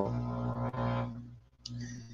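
A man's voice trailing off from "so" into a drawn-out, level-pitched hum lasting about a second and a half, followed near the end by a short breathy hiss.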